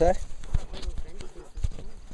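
A few irregular knocks, about half a second, one second and one and a half seconds in: handling bumps as the camera is moved about among gear bags in a canoe.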